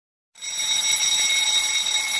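Countdown timer's end alarm, a steady bright bell-like ringing that starts about a third of a second in as the count reaches zero.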